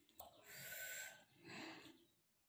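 Two faint, breathy bursts of mouth sound from a person drinking from a glass: air drawn and let out around sips of a warm drink.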